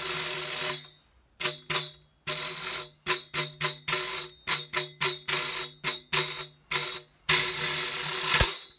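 Tambourine jingles sustained in a friction roll drawn across a sandpapered head, which makes the roll speak reliably. The roll stops about a second in, gives way to a run of short separate jingle bursts, and resumes as a sustained roll near the end.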